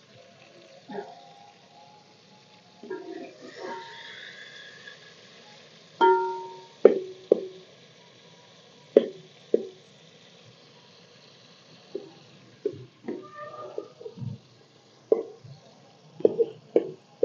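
A metal spoon stirring frying tomatoes in a stainless steel pot, knocking against the pot with short ringing clinks, singly and in quick pairs, at irregular moments.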